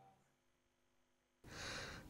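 Near silence, then about one and a half seconds in a soft, short breath-like hiss that runs until a man starts speaking.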